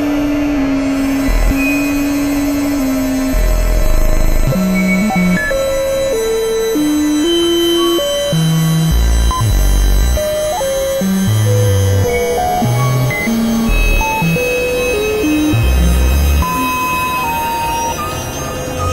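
Experimental electronic synthesizer music: single held tones jump from pitch to pitch in an irregular stepped line about every half second, over short low bass pulses and a dense, noisy drone.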